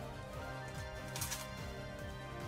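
Background music with a moving bass line, and a brief rustle of plastic about a second in as a trading card in a top loader is handled.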